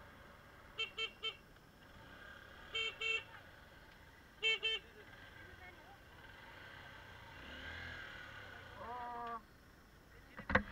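Vehicle horn tooting in short beeps, over faint road noise: three quick toots about a second in, two more near three seconds, and two more a second and a half later.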